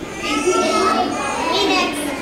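Children's voices: a group of kids talking and calling out over one another.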